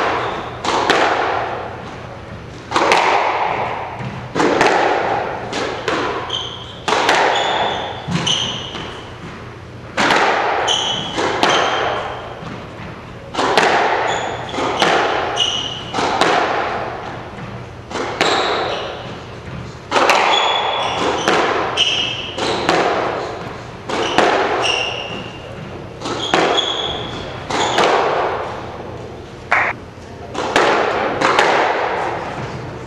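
Squash ball being struck by racquets and hitting the court walls in a rally, a sharp hit about every second to second and a half, each ringing on with a long echo in the enclosed court. Short high squeaks between the hits, typical of court shoes on the wooden floor.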